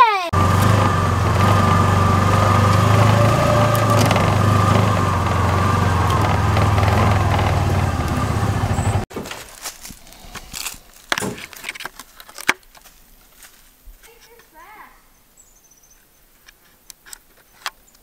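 A small off-road vehicle's engine running steadily under way for about nine seconds, cut off suddenly. After that, quieter scattered clicks and handling noises on a plastic trail camera.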